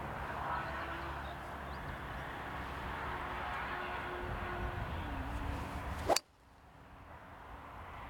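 Golf iron striking a ball off the tee: a single sharp impact about six seconds in, a shot struck a little fat. Before it a steady outdoor background with a faint low hum, which drops away abruptly right after the strike.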